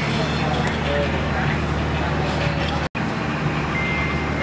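Steady background din: a low motor-like hum under indistinct chatter of people, cutting out for an instant about three seconds in.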